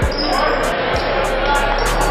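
Basketball dribbled on a hardwood gym floor: two bounces about a second apart, over chatter from the crowd in the gym.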